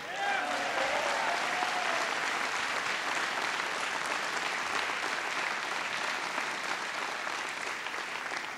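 A large crowd applauding steadily, the clapping easing slightly toward the end. A faint voice calls out over it in the first couple of seconds.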